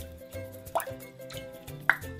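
Two small water plops, each a quick rising blip, about a second in and near the end, as a pet hedgehog paddles in shallow bath water, over soft background music.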